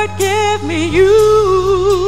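A woman singing a slow gospel song through a microphone, holding long notes with vibrato, over instrumental accompaniment with sustained bass notes.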